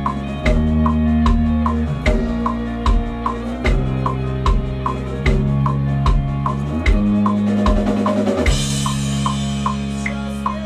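Four-string electric bass played fingerstyle over a drum track, holding low sustained notes that change every second or so against a steady clicking beat. A cymbal crash rings out near the end.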